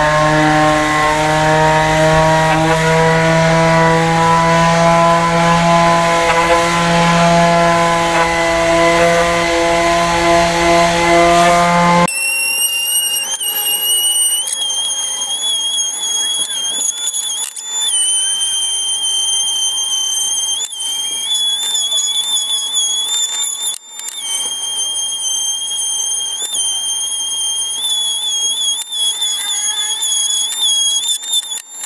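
Electric quarter-sheet palm sander with 80-grit paper running under load as it rough-sands pallet-wood boards, a steady motor hum with the rasp of paper on wood. About twelve seconds in, the low hum cuts off abruptly and a thin, high-pitched whine is left, its pitch stepping up and down while the sanding goes on.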